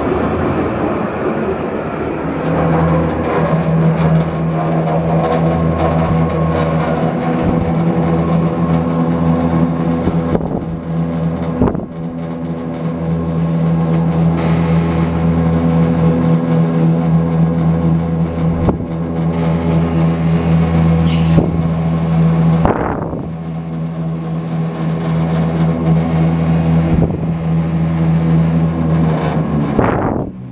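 Loud, steady machine noise: a low, unchanging drone with several overtones that holds its pitch throughout, with a few brief knocks heard over it.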